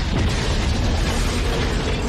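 Film soundtrack explosion: a house blowing up in a gas blast, heard as a loud, continuous blast of noise with a heavy, deep rumble.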